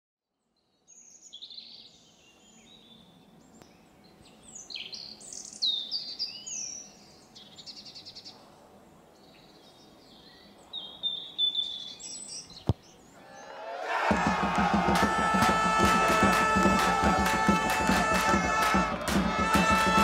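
Birds chirping and calling over a quiet outdoor background, with one sharp click a little before the music. About 14 seconds in, loud rock music with electric guitar comes in and carries on.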